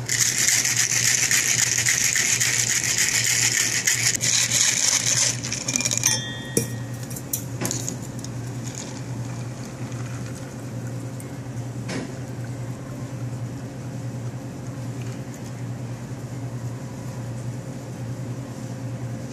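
Ice rattling hard inside a metal cocktail shaker capped with a mixing glass, shaken vigorously for about six seconds before stopping suddenly. Afterwards a quieter stretch with a steady low hum and a couple of clicks.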